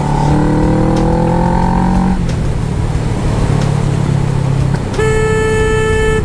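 Kawasaki ER-6n 650 cc parallel-twin engine rising in revs for about two seconds as the bike accelerates, then running steadier. Near the end a vehicle horn gives one steady blast of about a second.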